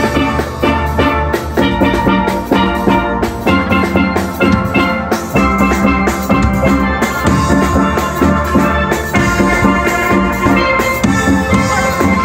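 A steel band playing live: many steelpans struck with sticks, ringing out a busy, rhythmic tune of melody and chords over a steady low bass line.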